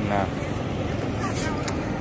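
Steady outdoor background noise with no clear source, and a few brief dry rustles about a second and a half in as hanging woven bamboo charms are taken in hand.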